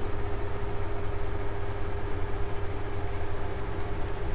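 Steady low mechanical hum with hiss and a faint held tone, unchanging throughout: background machine noise of the kind a fan or air conditioner makes.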